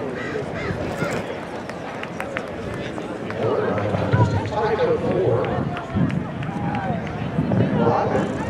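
Indistinct chatter from spectators and nearby people, with voices talking more clearly and a little louder from about three and a half seconds in, and faint scattered clicks.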